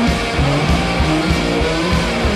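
A live rock band playing electric guitars, bass and drums, with a steady beat under held guitar notes.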